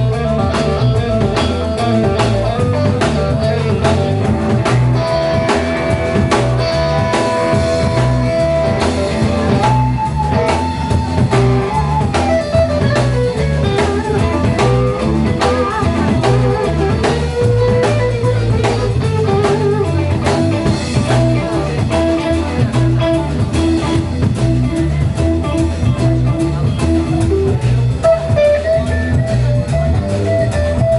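Live instrumental passage from an electric guitar, upright double bass and drum kit. The electric guitar plays a lead line of held and sliding notes over a steady bass line and the drum beat.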